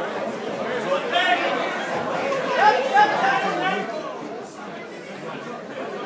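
Crowd of spectators talking and calling out indistinctly, with a few louder shouts in the first few seconds, quieter for the last two seconds.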